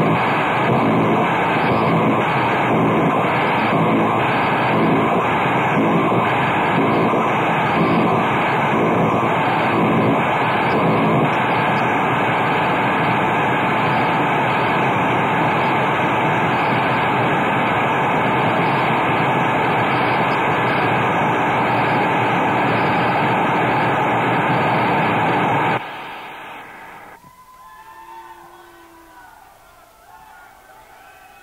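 Harsh industrial noise music played live and heard straight off the soundboard: a dense, loud roar that pulses about once a second at first, then settles into a steady wall with a held tone running through it. The noise cuts off suddenly a few seconds before the end, leaving only faint low background sound.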